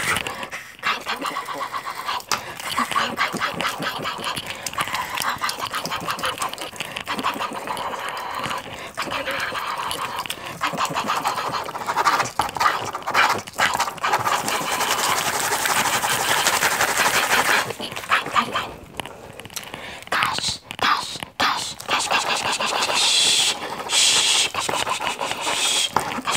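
A pen scribbling fast on loose-leaf lined paper close to the microphone: a dense scratching in rapid back-and-forth strokes. It turns choppy and stop-start near the end.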